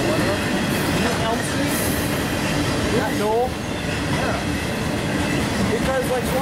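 Freight train of trailers on flatcars rolling past close by: steady wheel-and-rail noise of the passing cars.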